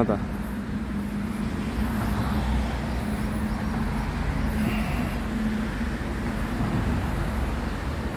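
Steady low rumble of road traffic on an elevated road overhead, with a steady hum that fades out about three quarters of the way through.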